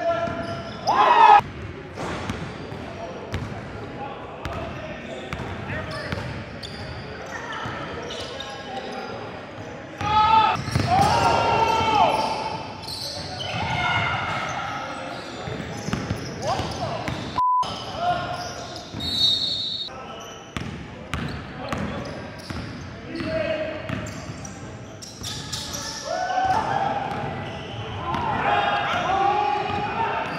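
Basketball bouncing on a hardwood gym floor as players dribble, with short sneaker squeaks and players' voices calling out, all echoing in a large hall.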